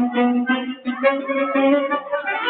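Loud dance music: a quick, many-noted melody over held lower notes.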